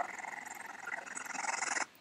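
A video clip's outdoor audio played back while the playhead is dragged quickly through it, giving a choppy, buzzy noise that cuts off suddenly near the end.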